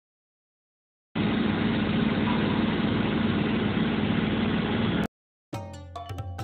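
After a second of silence, a steady machine-like running noise holds at an even level for about four seconds, then cuts off suddenly. Music with percussion starts just before the end.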